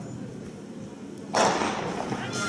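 Starting pistol fired for a sprint start: one sudden sharp crack about a second and a half in that rings on afterwards, following a low stadium murmur.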